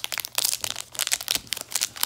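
Crinkling of a sealed Topps Allen & Ginter jumbo card pack's plastic wrapper as it is handled and turned over in the hands, a dense run of crackles.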